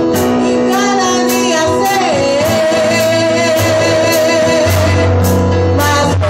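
A woman singing a worship song into a microphone over accompaniment with bass and a steady beat of about two hits a second. She holds long notes and slides down on one about two seconds in.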